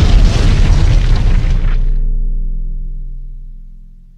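A cinematic boom sound effect, an explosion-like blast, over a held music chord. Its hiss dies away about two seconds in, and the deep rumble and chord fade out toward the end.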